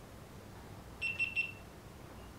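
A GoPro Hero 12 Black sounds a quick run of short, high beeps about a second in, its camera beep signalling that recording has stopped.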